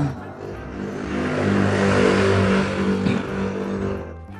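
A rushing noise that swells to a peak about two seconds in and then fades away, over steady background music.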